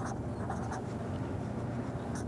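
A marker writing on a paper pad: a few short, faint scratching strokes as letters are drawn, over a steady low background hum.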